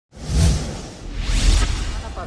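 Whoosh sound effects of a news channel's logo intro: two swooshes about a second apart, each with a deep low boom underneath.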